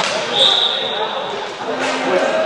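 An umpire's whistle blows one short, steady, high blast about half a second in, over players' voices echoing in a sports hall. Sharp knocks of stick and ball come at the start and near the end.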